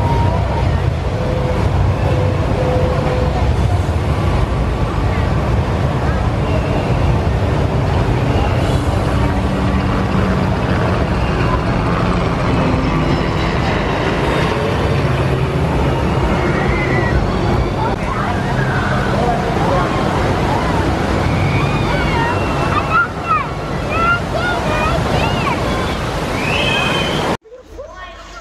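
Steady rush of churning whitewater in the channel of an Intamin river rapids ride. In the second half, people's voices and shouts rise over the water noise.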